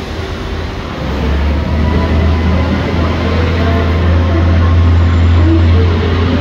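Low, steady rumble of idling vehicles and traffic, likely buses at the curb, that grows louder about a second in and then holds.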